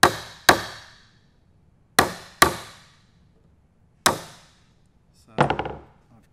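A hammer striking a wood chisel five times, in two quick pairs and then a single blow, each a sharp knock with a short ringing tail. The chisel is being driven into the timber in a row of close cuts to chop out a butt-hinge recess.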